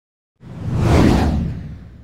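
A whoosh sound effect with a low rumble under it, part of an animated channel-logo intro: it swells in about half a second in, peaks around a second and fades away.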